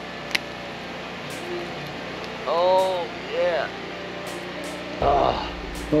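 A man's short wordless vocal sounds, two brief hums around the middle, with a sharp click just after the start and a brief noisy burst near the end.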